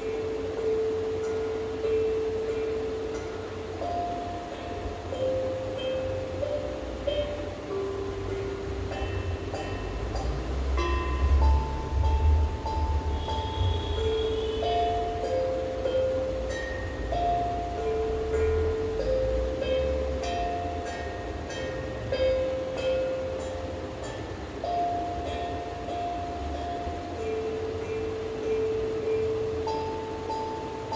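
A slow melody of single clear notes on a musical instrument, stepping up and down among a few pitches, each note held a second or two, over a low rumble.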